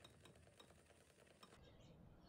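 Near silence: faint background hiss with a few faint ticks, the background changing about one and a half seconds in.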